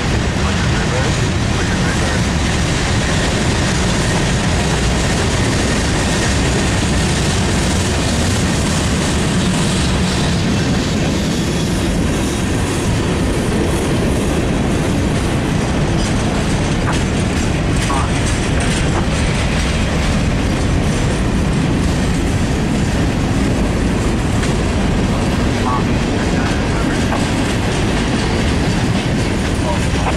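Freight cars of a long mixed freight train rolling past close by: a steady rumble of steel wheels on the rails with rhythmic clatter as the trucks cross rail joints.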